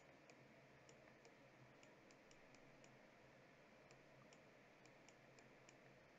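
Near silence: faint room tone with a scattering of small, faint clicks.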